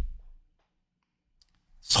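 A pause in a man's speech: near silence broken by one faint, short click, then his voice resumes near the end.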